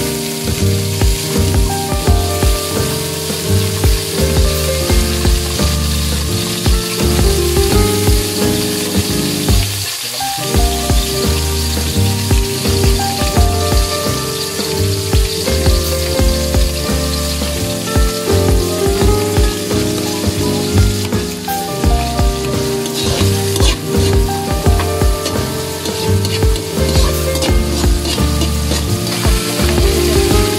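Garlic, onion and ginger frying in hot oil in a wok, a steady sizzle, under background music with a regular beat.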